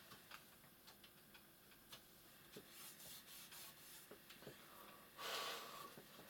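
Near silence, broken by faint scattered clicks and taps from fingers handling a laptop's aluminium and plastic bottom panel, and a short hiss about five seconds in.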